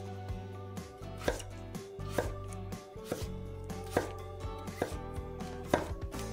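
Chef's knife slicing through stacked Korean radish slices and striking a wooden cutting board, one sharp chop about every second.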